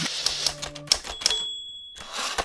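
Logo intro sound effect: a quick run of sharp mechanical clicks, like typewriter keystrokes, with a high bell-like ring about a second in.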